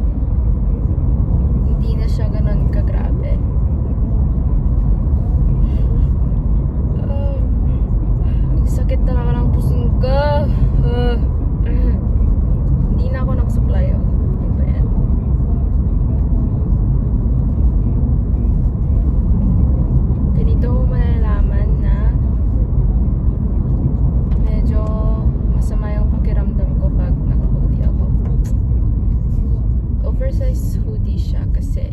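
Steady low road and engine rumble inside a moving car's cabin, with a woman's voice coming in now and then, sliding up and down in pitch as if humming or singing to herself.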